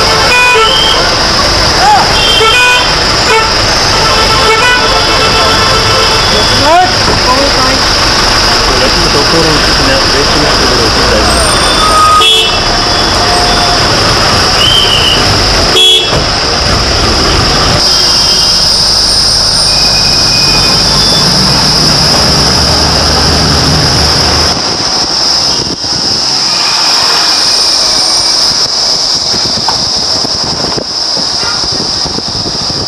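Road vehicle running steadily on a mountain road, heard from on board, with engine and road noise and several vehicle horn toots, clustered in the first few seconds and again about twelve seconds in. The low rumble eases off about three quarters of the way through.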